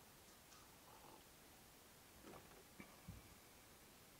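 Near silence: room tone, with a few faint, soft sounds about two to three seconds in as a man sips and swallows coffee from a glass.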